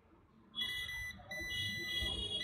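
Digital multimeter's continuity buzzer beeping: a steady high tone that starts about half a second in, drops out briefly and comes back as the probe contact makes and breaks. It signals continuity between the probed point and the first pin of the display backlight connector.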